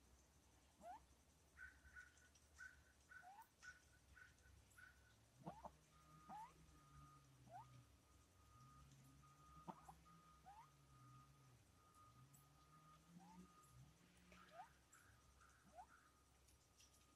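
Near silence, with faint short rising chirps about once a second and a quick run of short notes in the first few seconds. A thin steady tone runs through the second half over a faint low wavering drone.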